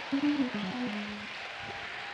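A few low notes from a musical instrument, a short falling run ending on a held note about a second in, over a faint steady room murmur.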